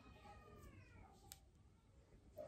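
A faint, drawn-out animal call, falling in pitch and fading out a little after a second in, then a single soft click.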